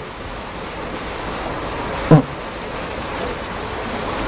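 Steady rushing noise like flowing water, with a man's brief "eo" about two seconds in.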